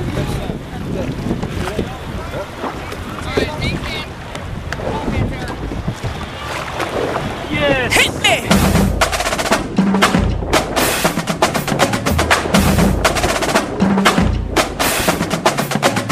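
Wind and water noise around a small fishing boat, with short shouts, as a fish is brought alongside and netted. About halfway through, background music with a strong drum beat comes in and takes over.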